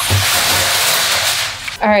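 Tap water running in a steady hiss, as a cup is filled, stopping shortly before the end.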